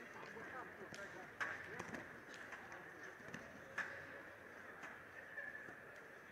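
Quiet sports-hall ambience around a judo bout: faint distant voices calling out, with two sharp knocks, about a second and a half in and again near four seconds.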